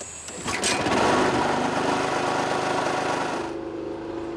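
Small portable petrol generator engine starting up about half a second in and running with a fast, buzzing engine note. The sound drops away shortly before the end.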